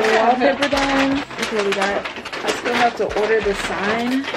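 A woman talking.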